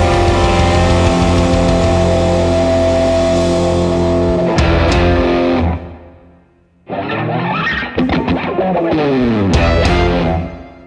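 Live rock band playing a loud, sustained electric guitar chord over drums and bass, which stops about five seconds in and rings off. After a brief near-silence, a solo electric guitar comes in with sliding, falling lines that fade out at the end.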